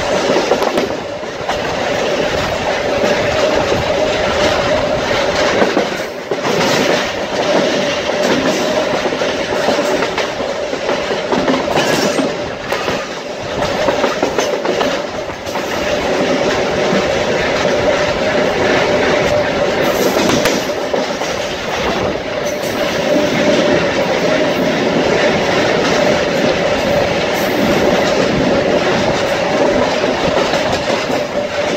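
SuperVia Série 500 electric multiple unit running at speed, heard from a window of the car: wheels rolling on the rails with scattered clicks over rail joints and a steady mid-pitched hum beneath.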